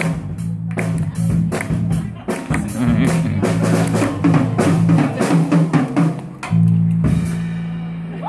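Live rock band playing: drum kit with bass drum and snare, electric guitars and a low bass line. About six and a half seconds in, the drums stop and the band holds one final chord, the end of the song.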